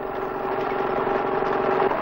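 Combine harvester engine running with a steady, pitched hum that grows a little louder, its main tone cutting off shortly before the end.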